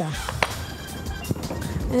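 Quiet background music, with a couple of light knocks and low handling noise as a glass bowl of broccoli is moved on the counter.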